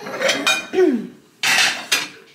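Ceramic dinner plates clinking and scraping as they are handled and stacked into a cupboard, with a sharp clink near the end.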